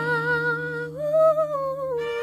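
Female vocalist singing a wordless held note with vibrato, stepping up to a higher note about halfway and gliding back down, over a sustained backing chord.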